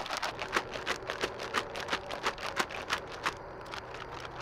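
Zip-top MRE beverage pouch shaken hard to mix instant coffee powder, rustling in a fast even rhythm of about four to five shakes a second. It stops about three seconds in.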